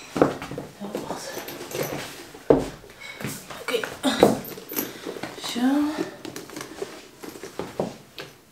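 Wordless voice sounds mixed with knocks and rustling from someone moving about a small room, with one sharp knock about two and a half seconds in.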